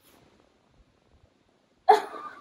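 Faint rustling, then near the end a sudden, loud, gasp-like burst of a person's voice.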